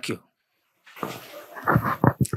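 Handheld microphone being handled and passed from hand to hand, heard through the sound system as a rising rustle with a few dull bumps near the end.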